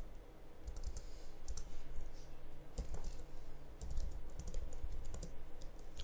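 Computer keyboard typing: an uneven run of keystrokes as a line of text is typed.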